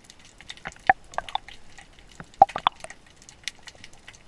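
Underwater sound through a submerged camera: a steady crackle of small clicks, with about five louder watery pops, bunched around one second and two and a half seconds in.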